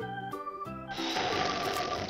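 Background music with held electronic organ-like keyboard notes. About halfway through, an even hiss joins the music and runs on for about a second.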